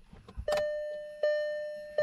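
Kia Sonet's electronic warning chime sounding twice, about three quarters of a second apart, each tone fading out; the cluster is showing a door-open warning.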